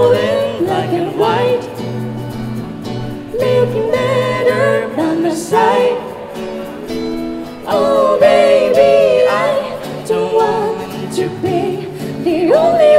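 A woman singing a slow song in phrases of a few seconds, with acoustic guitar chords underneath.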